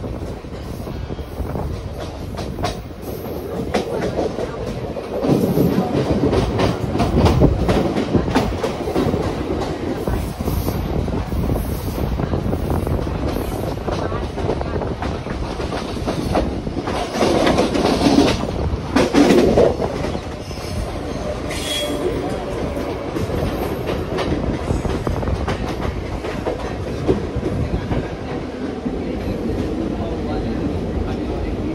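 Mumbai suburban electric train running, heard from its open doorway: a continuous rumble with the wheels clattering over rail joints and crossings. The rumble grows louder about five seconds in and again around seventeen to twenty seconds.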